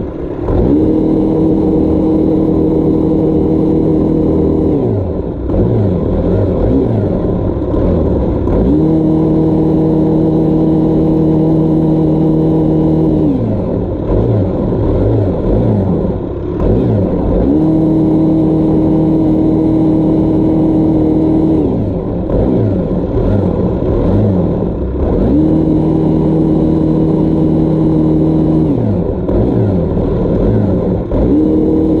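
STIHL power sweep attachment on a small engine powerhead, running its rotating brush through lawn grass to lift wood chips left by stump grinding. The engine holds a steady high speed for about four seconds at a time, then its pitch dips and wavers before climbing back again, four times over.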